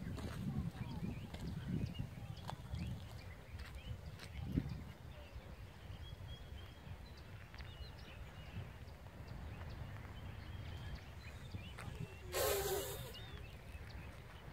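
Quiet outdoor ambience: a steady low rumble with faint, scattered high chirps. About a second and a half before the end comes a single brief, loud pitched call.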